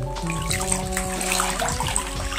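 Background music with held notes over a bass line, and under it bath water being swished and splashed by hand.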